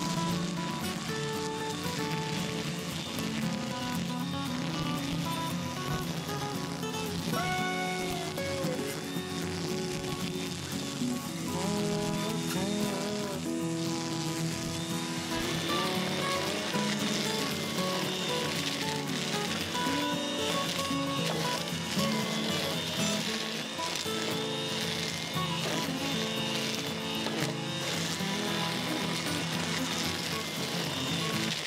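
Background music carrying a melody of shifting notes, growing fuller about halfway through.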